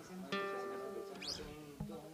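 A chord strummed once on an acoustic guitar about a third of a second in, left to ring and slowly fading.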